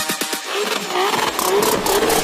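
Breakdown in a bass-heavy electronic dance track: the rapid kick drums stop right at the start and the deep bass drops out. A wavering mid-pitched sound that rises and falls carries on over light high ticking.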